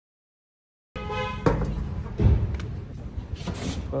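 Silence for about the first second, then a short voice followed by a few dull thumps amid handling and movement noise.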